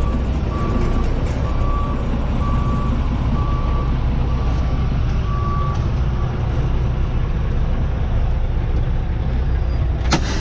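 Semi-truck diesel engine running, heard from inside the cab, with a reversing alarm beeping about once a second until it stops about six seconds in.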